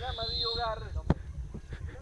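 Faint shouting from players out on the pitch of an outdoor football match. About a second in comes a single sharp thump of the ball being kicked.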